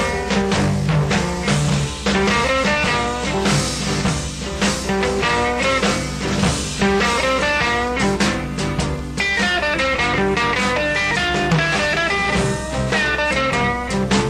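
Instrumental break in a 1964 blues record, with guitar lines played over the band's steady beat and no singing.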